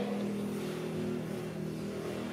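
A steady, low-pitched hum, like a motor vehicle's engine running.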